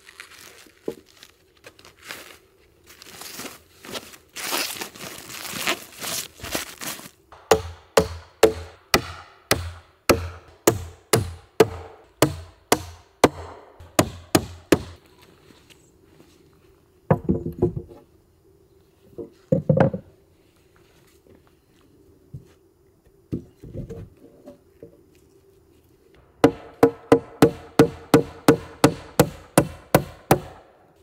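Hammer blows on wooden floorboards as they are fastened down, in runs of about two strikes a second, with a stretch of rustling before them and a faster run of blows near the end.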